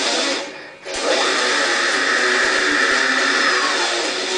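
Distorted Explorer-style electric guitar playing a fast metal riff. It cuts out briefly about half a second in, then comes back about a second in with a long, steady high-pitched passage.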